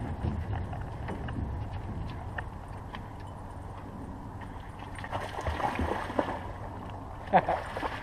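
Footfalls and water splashing as a chocolate Labrador runs down a boat ramp and wades into the river, over a low rumble. A person bursts out laughing near the end.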